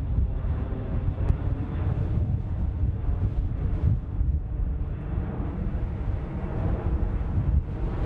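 French Air Force C-135FR (KC-135) tanker's four CFM56 turbofan engines running at power as it passes overhead and goes away after a low approach: a loud, steady, deep rumble.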